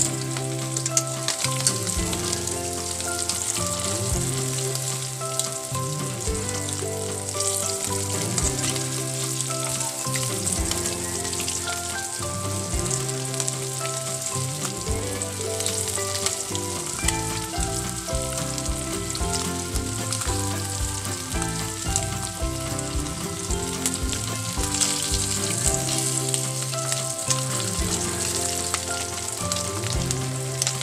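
Dried anchovies (dilis) deep-frying in hot oil in a wok: a steady, even sizzle, with metal tongs now and then turning the fish. Background music with a stepping bass line plays under it.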